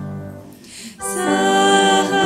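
A hymn sung by female voices with organ accompaniment. A held chord fades to a short pause about half a second in, and the next phrase begins about a second in.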